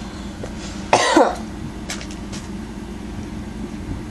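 A person coughs once, briefly, about a second in, over a steady low background hum.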